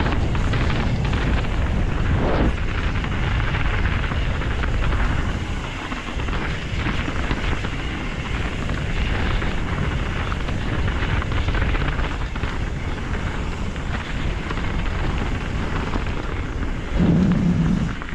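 Wind rushing over an action-camera microphone as a Canyon Strive enduro mountain bike descends a rough, partly icy dirt trail, with knobby tyres rolling over the dirt and the bike knocking and rattling over bumps. A steady loud rush with scattered knocks throughout.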